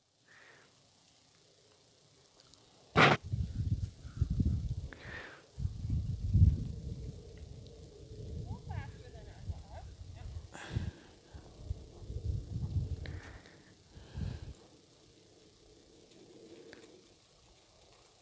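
Wind buffeting the microphone in gusts: low, irregular rumbling that starts suddenly about three seconds in and dies away about three and a half seconds before the end, after a near-silent start.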